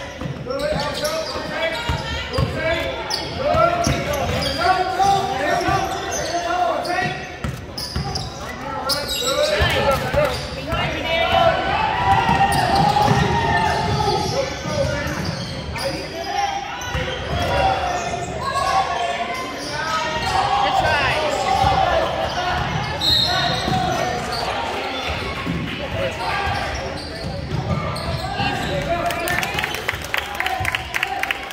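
A basketball game in a gym: a ball bouncing on the hardwood court, with many voices of players and spectators calling and talking throughout. A brief high-pitched tone comes about three quarters of the way through.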